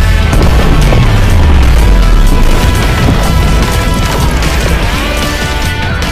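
A deep explosion sound effect, a heavy low rumble that slides down in pitch and slowly fades, laid over music.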